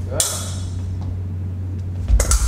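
A steady low hum with faint room noise. About a fifth of a second in there is one short, sharp click alongside a spoken word.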